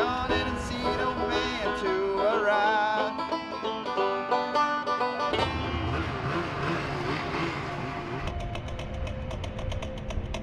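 Banjo-led bluegrass music with quick picked notes. About five seconds in it gives way to a low, steady rumble, and near the end a quick, even beat comes in.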